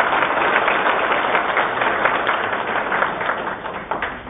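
Audience applauding: a steady patter of many hands clapping that thins out near the end.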